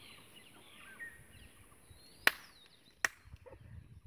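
Two sharp, sudden clicks or snaps about three-quarters of a second apart, over faint bird chirps in the background.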